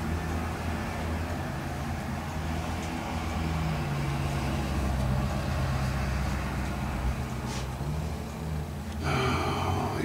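A low, steady mechanical rumble, with a humming tone that swells and wavers slightly in pitch through the middle.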